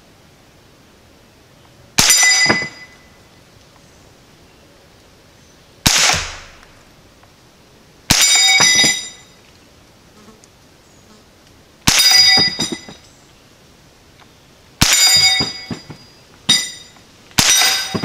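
Smith & Wesson M&P15-22 semi-auto rifle firing CCI Quiet .22 LR rounds: seven sharp, fairly quiet shots fired singly a few seconds apart. Five of them are followed at once by a short metallic ringing clang as a metal bottle target is hit and knocked over.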